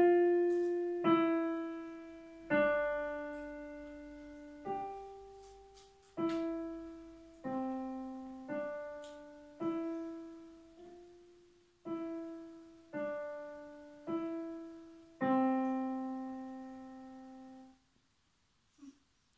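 A digital piano played one note at a time: a slow, simple beginner's melody of about a dozen single notes around middle C, each struck and left to fade, with uneven pauses between them. The last note is held for a couple of seconds and then cut off.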